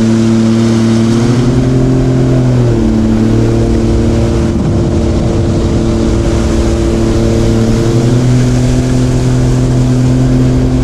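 Sea-Doo Explorer Pro 170 jet ski's Rotax 1630 ACE three-cylinder engine running at a steady cruise, with the rush of water under the hull. The engine note steps down about three seconds in and rises again about eight seconds in as the throttle changes.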